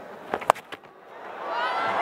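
A cricket bat hitting the ball with one sharp crack about half a second in, the loudest sound here, with a couple of fainter clicks around it. Stadium crowd noise swells after the shot.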